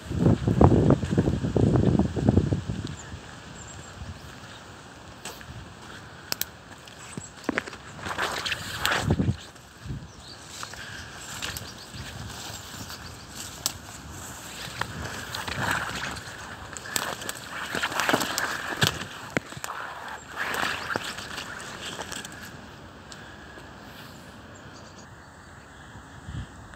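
Footsteps on a wet path strewn with fallen twigs and leaves, with scattered rustles and crackles and an outdoor wash of noise that swells now and then. A loud low burst fills the first two seconds.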